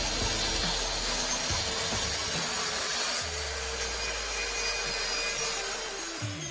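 Bosch plunge-cut circular saw with a 165 mm, 48-tooth Freud melamine blade, set to full depth, running steadily as it cuts through a melamine panel along a guide rail.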